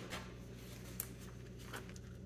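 Quiet room tone with a steady low hum, broken by a few faint clicks and small handling sounds; the sharpest click comes about a second in.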